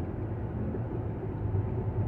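Steady low background rumble with a hum, even throughout.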